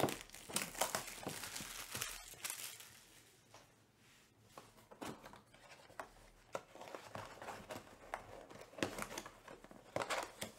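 Plastic shrink wrap being torn and crinkled off a Topps Chrome Black trading-card box, densest in the first three seconds. Then quieter cardboard rustles and a few light taps as the box lid is opened and its contents handled.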